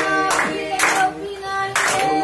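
A group of young voices singing together, with hand-clapping keeping the beat about every half second.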